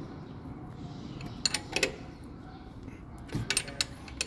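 A few light metal clicks and clinks from a wrench on the crankshaft sprocket bolt as the engine is turned by hand to its timing mark. There are three clicks around the middle and a quick cluster near the end.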